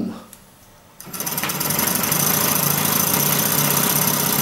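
Hand-cranked demonstration generator, its contacts set to work as a dynamo, being spun up: a rapid, steady mechanical rattle that starts about a second in and quickly comes up to speed.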